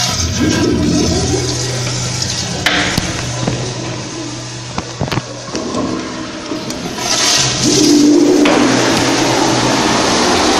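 Commercial toilet flushing: a continuous rush of water that swells louder about seven seconds in, with a few sharp clicks near the middle.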